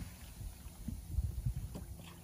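Low, irregular buffeting of wind on the microphone over water lapping at a small boat's hull.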